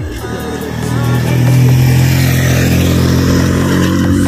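A motorcycle engine running and growing louder about a second in, with background music underneath.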